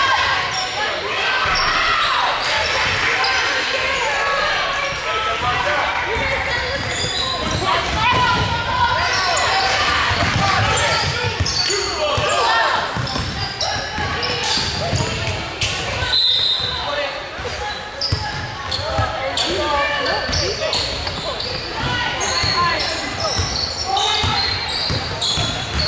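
A basketball bouncing on a hardwood gym floor amid the overlapping voices of players and onlookers, echoing in a large gymnasium.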